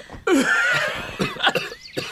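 A man coughing.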